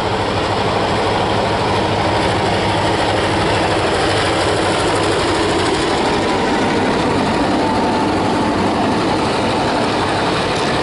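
Two heritage diesel-electric locomotives, 421 class 42103 and GM class GM22, running under power as they approach and pass close by hauling a train of passenger-type carriages. Their engines run steadily and loudly, and by the end the carriages are rolling past on the rails.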